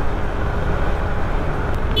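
Steady wind and road noise from a motorcycle cruising at speed, with the engine running underneath.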